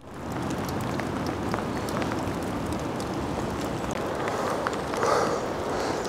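Driving rain falling as a steady rush of noise with scattered drop hits, swelling briefly about five seconds in.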